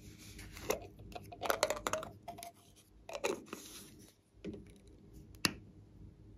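Small pink plastic case being handled and worked open by hand: a run of sharp plastic clicks and crackles, with one loud snap about five and a half seconds in.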